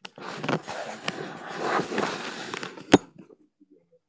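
Camera handling noise: the camera rustling and scraping against soft material while being moved, then a single sharp knock about three seconds in, after which it falls quiet.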